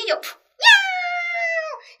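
A person's voice imitating a cat's meow: one long call starting about half a second in, jumping up and then sliding slowly down in pitch for about a second before it stops.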